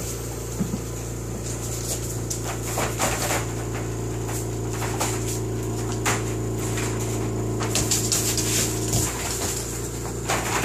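Dogs playing on a wood floor: scattered clicks and scrabbles of claws and paws, with light knocks against a wire crate, over a steady low machine hum.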